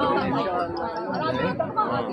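Several women talking at once in a close crowd: overlapping chatter with no single voice standing out.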